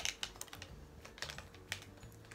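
Light clicks and crinkles of a plastic packet being handled in the hands: a quick cluster right at the start, then a few scattered clicks around a second in and near the end.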